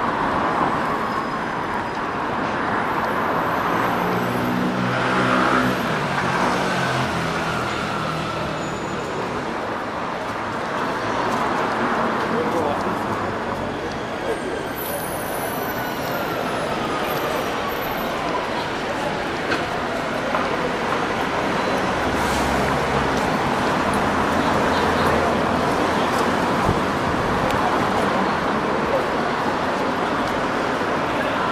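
City street ambience: steady road traffic noise with people's voices in the background. An engine passes close by about five seconds in, and a faint falling whine follows midway.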